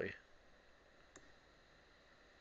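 Near silence (room tone), with a single short click from a computer mouse about a second in.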